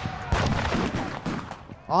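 Battle sound effect of massed gunfire: many overlapping shots crackling together, dying down near the end.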